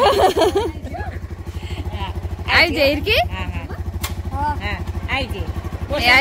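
Hero Honda motorcycle engine idling steadily with a rapid, even low throb, while voices call and laugh over it in short bursts.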